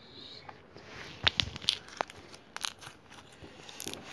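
Homemade slime made from glue and Persil detergent being squeezed and pressed by hand, giving irregular sharp pops and crackles from about a second in.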